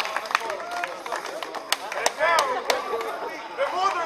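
A small crowd of people talking and calling out over one another, with scattered sharp hand claps throughout and a louder burst of voices about halfway through.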